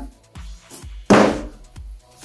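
Background music with a steady beat, and a single loud thunk about a second in as the polystyrene packing and cardboard box are handled.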